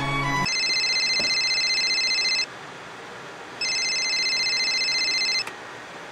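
Phone ringing with an electronic ring tone: two rings, each about two seconds long, with a pause of about a second between them. A bit of violin music cuts off just before the first ring.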